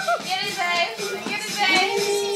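Young children's voices and play sounds: excited babble and squeals with no clear words.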